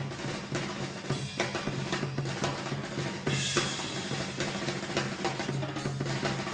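Jazz drum kit playing fast, busy snare, bass drum and cymbal figures, with a steady low note underneath.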